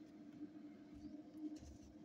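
Near silence: a faint steady hum, with a few soft handling sounds as emu eggs are turned by hand on the incubator's paper liner.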